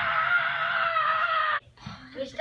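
A child's long high-pitched scream, held on one note that sinks slowly, then cut off suddenly about a second and a half in.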